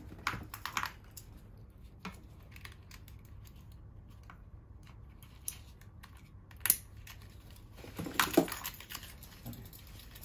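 Small metal clicks and rattles as a shoulder strap's metal snap hooks are handled and clipped onto rings on a battery cable cutter, scattered through, with a louder cluster of clicks near the end.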